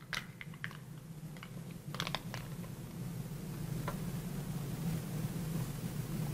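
Empty aluminium soda can crushed in one hand, giving scattered faint crinkles and clicks, with a small cluster about two seconds in, over a steady low hum.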